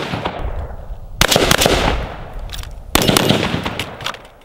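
AR-15 carbine fired in strings of rapid shots. A string already under way fades out, new strings start about a second in and again near three seconds, and each one trails off in echo.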